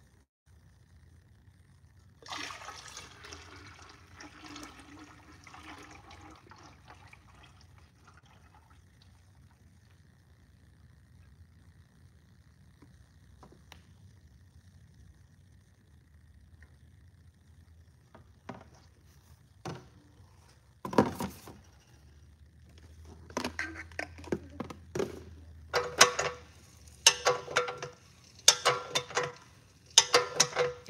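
Oil pouring from a large plastic jug into the hopper of a bottle-filling machine. The pour starts about two seconds in and trails off over several seconds. In the last third, a run of sharp knocks and clatters, louder than the pour, comes from handling the jug and the filler.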